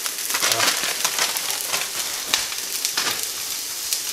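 Chopped garlic and sliced onions sizzling in hot olive oil in a frying pan, with a dense crackle of many small pops.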